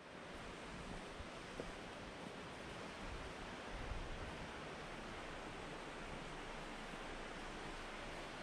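Steady outdoor background noise: an even rushing hiss with no distinct events, fading in at the start.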